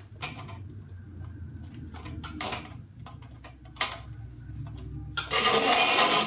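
Thin metal poles of a wardrobe-rack frame being fitted into plastic corner connectors: a few light clicks and knocks, then near the end a louder clatter lasting about a second as the frame is moved.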